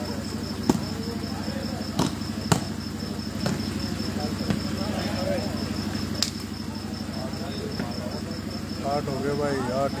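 A volleyball being struck by hand during a rally: about six sharp smacks over the first six seconds, the loudest within the first three. Voices of players and onlookers call out near the end.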